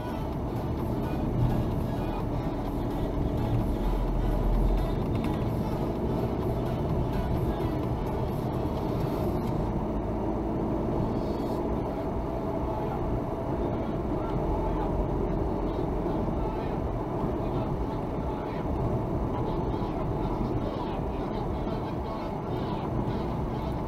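Steady engine and tyre noise heard from inside a car's cabin as it drives a winding road, picking up speed. A brief low rumble swells about four seconds in.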